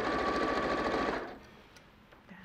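Domestic electric sewing machine stitching a seam at speed, a fast even needle rhythm over a steady motor whine, slowing and stopping a little over halfway through.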